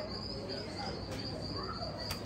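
Steady, high-pitched trill of crickets, holding one unbroken pitch.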